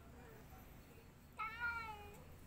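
A domestic cat meowing once, a short call that comes about a second and a half in, rises a little and then falls. The cat is hungry and asking to be fed.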